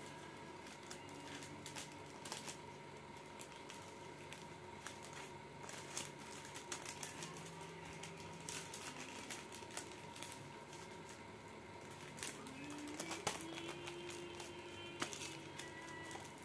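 Irregular light tapping and clicking of small objects being handled, with faint music playing behind.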